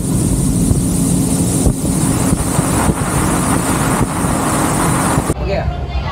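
Motorboat engine running steadily under way, with wind noise on the microphone; it cuts off suddenly about five seconds in.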